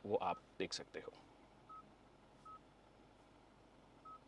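A few brief voice sounds in the first second, then two short, faint beeps about a second apart from the Hyundai Creta's dashboard touchscreen, confirming taps on its 360-degree camera view buttons.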